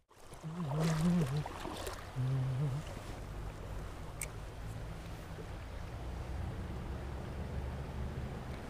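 Steady low rushing of creek water around the legs of a wading angler. A faint low voice sounds twice in the first three seconds.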